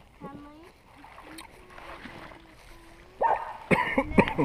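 Water splashing and lapping around an inflatable kayak as it sits and is paddled in shallow water, with faint voices in the background. Near the end come two short, loud calls.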